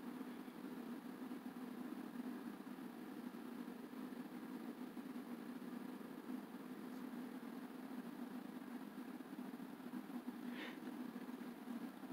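Faint, steady low hum of a quiet room, with a brief soft hiss about ten and a half seconds in.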